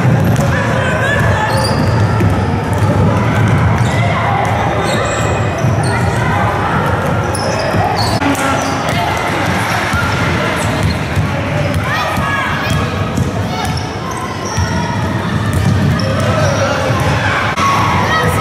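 Basketballs bouncing repeatedly on a wooden court in a large indoor gym, several at once, over a steady background of children's voices and calls around the hall.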